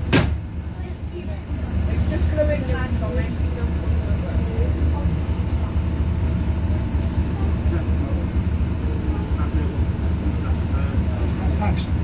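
Leyland Panther bus's diesel engine idling steadily, heard from inside the saloon, with two sharp knocks right at the start. Faint voices come and go over the engine.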